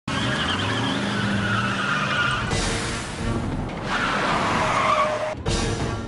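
Film car-chase sound mix: car engines running hard and tyres squealing in two long, wavering screeches, the first in the opening couple of seconds and the second, falling in pitch, about four seconds in, with sudden cuts between shots.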